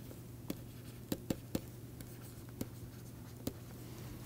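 Stylus writing on a tablet screen: about half a dozen faint, scattered taps and clicks of the pen tip over a steady low hum.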